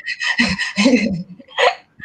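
Laughter: short breathy bursts of laughing, with a quick sharp intake of breath near the end.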